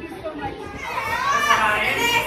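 Students' voices: a hubbub of chatter, with a raised, high-pitched voice rising from about a second in.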